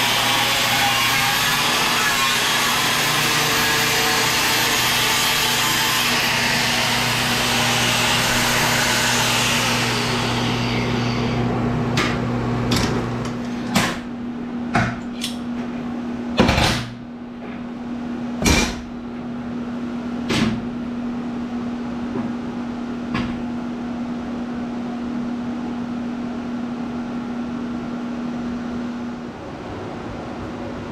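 A 14.5-amp Metabo angle grinder cutting through steel for about ten seconds, then its motor running down. After that come a dozen or so sharp metal clanks and knocks as the cut steel pieces are handled on the metal bench, over a steady low hum.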